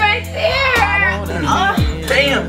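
An R&B song with a high singing voice over a steady bass line, with a deep kick drum that drops in pitch near the end.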